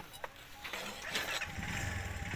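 A single light metal clink from the rebar on the steel bending plate, then an engine starting up in the background from about halfway through and growing louder.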